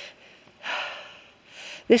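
A woman's breathing close to the microphone: two short audible breaths, one about half a second in and another shortly before the end.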